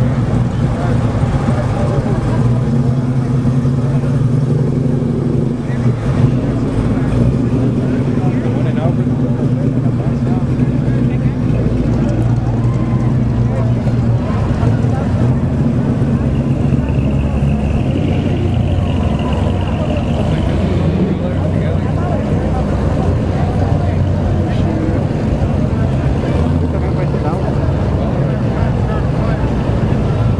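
Classic 1950s cars, Chevrolet Bel Airs among them, rolling past one after another at low speed, with a steady low engine rumble that rises and falls as each car goes by. A brief high whine sounds about two thirds of the way through, over crowd chatter.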